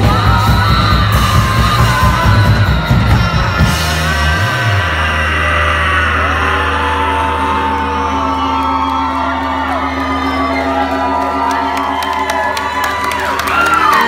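Live rock band with electric guitars, bass and drums playing loudly, the drums hitting steadily until about four seconds in, then a long chord held and left ringing as the song ends. Audience members whoop and yell over the held chord.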